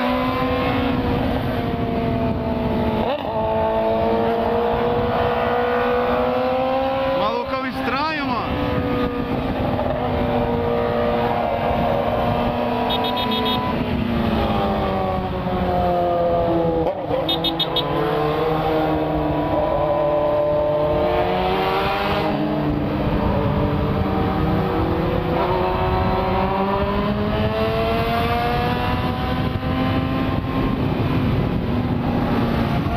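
Yamaha FZ6's 600 cc inline-four engine heard from the rider's seat at highway speed. The engine note rises and falls as the bike accelerates and eases off in traffic, with a quick rise and fall about eight seconds in, over a constant rush of wind noise.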